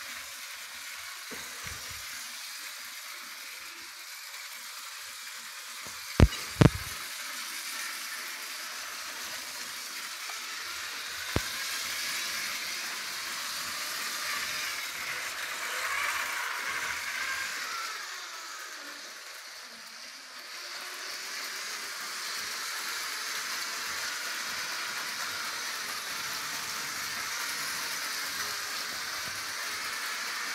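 LEGO 9V trains running on the spiral's plastic track, a steady rattling noise of the train motors and wheels that swells in the middle and dips for a moment about two-thirds through. Two sharp knocks come about six seconds in, and another near the middle.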